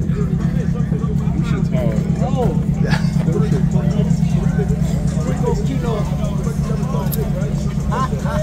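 A car engine idling with a steady, even low rumble, under men's voices.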